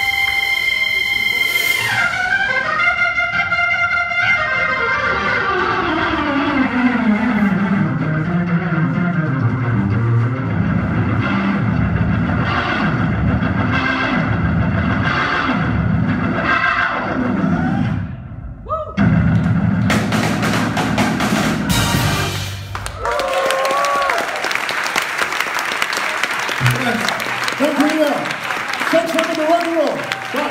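A Hammond organ rock band with drums plays the closing passage of a song, with a long falling sweep in pitch early on. The music stops about 23 seconds in, and audience applause and cheering follow.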